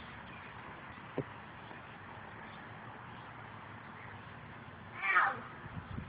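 Steady outdoor background noise with a faint click about a second in, then one short high-pitched cry about five seconds in.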